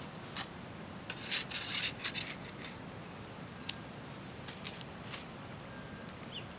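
Metal spatula clinking once against an enamel camp plate, then scraping across it in a few quick strokes for about a second as food is slid onto the plate, followed by a few faint ticks.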